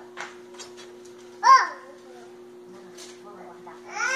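A child's short, high-pitched call about a second and a half in, over a steady low electrical hum and a few faint clicks.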